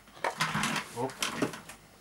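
A man's voice: a short "Oh" about halfway through, amid a few light clicks.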